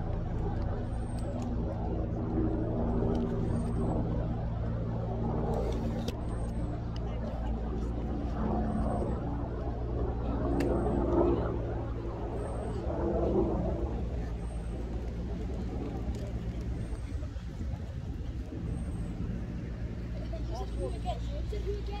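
A steady low engine hum that holds one pitch throughout, with faint murmured voices over it in the first half.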